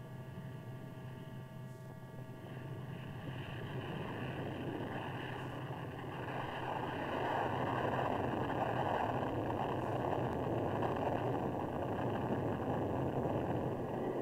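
Grumman F-14A's twin Pratt & Whitney TF30 turbofans at takeoff power, a steady jet noise that grows louder over the first half as the fighter rolls and lifts off, then holds.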